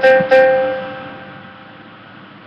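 Keyboard playing the same note twice in quick succession, the second held and left to die away over about a second and a half.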